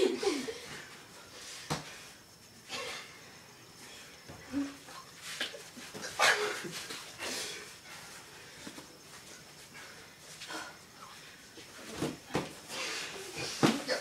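Scattered scuffling and a few sharp knocks from two people play-fighting, with short bursts of voice or laughter in between.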